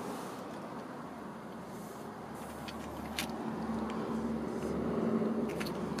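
Steady outdoor background noise with a faint low hum in the middle and a few light clicks, one clearer than the rest about three seconds in. It grows slightly louder toward the end.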